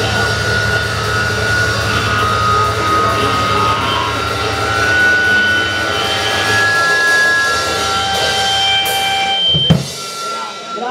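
Raw punk noise band playing live: a loud, dense wall of distorted bass, drums and held high synthesizer tones over a low drone. The piece cuts off near the end with one last loud hit.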